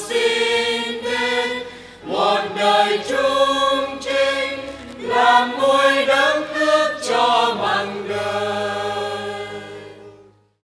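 Choir singing a hymn in several-second phrases, the closing hymn of the Mass, fading out near the end.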